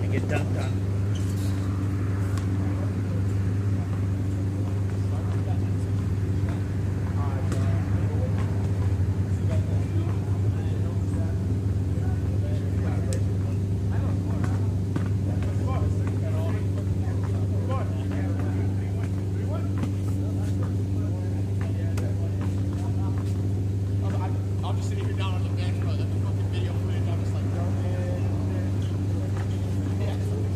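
A steady low hum with a constant pitch runs throughout. Over it come distant voices of people playing basketball and scattered sharp knocks of basketballs bouncing on the court.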